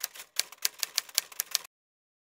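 Typewriter sound effect: a quick run of about a dozen key strikes, roughly seven a second, stopping suddenly near the end.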